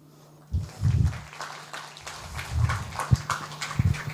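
Audience applauding, starting about half a second in as a dense patter of claps.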